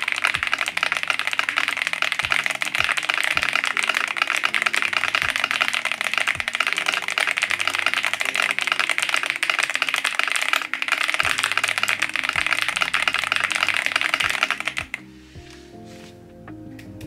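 Rapid touch-typing on an RK S98 mechanical keyboard: a dense, continuous clatter of keystrokes that stops about a second before the end.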